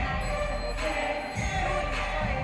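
Background music with a vocal melody over a steady low beat.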